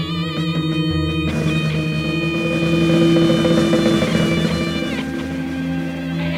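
Improvised guitar soundscape music with layered, sustained notes. Wavering notes give way about a second in to a fresh held chord, whose upper notes bend down and fade out near the end.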